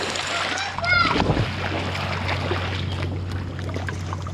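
Splash of a child jumping into a swimming pool right beside the camera, followed by steady water churning and sloshing as the disturbed water settles.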